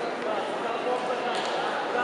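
Steady chatter of many voices at once in a large sports hall, with no single voice standing out.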